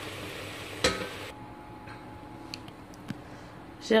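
Diced apples sizzling in butter in a stainless-steel pot, with a single knock of the wooden spatula against the pot about a second in. The sizzle cuts off suddenly shortly after, leaving a quiet stretch with a few faint clicks.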